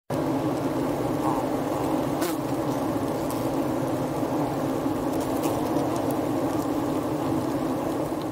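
Many honey bees buzzing together, a steady dense hum.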